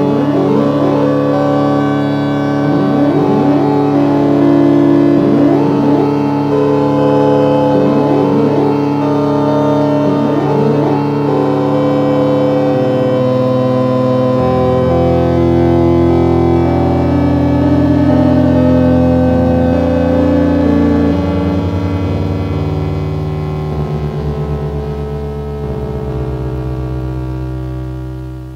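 Instrumental keyboard track from a raw black metal demo: sustained synthesizer chords that change every few seconds, with short sliding notes in the first ten seconds or so. The music fades out near the end.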